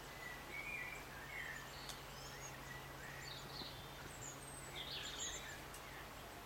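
Small birds singing and calling in trees: scattered short, high chirps and whistles over a steady faint background hiss. A faint low hum sits under them for the first couple of seconds.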